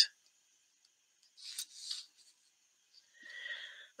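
Faint, brief rubbing and scraping from hands handling metal tatting needles and a paper card, in two short patches: about a second and a half in and again near the end.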